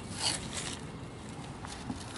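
The back of a butter knife scraping scales off a chinook salmon's skin, with two short scraping strokes in the first second, then only faint background.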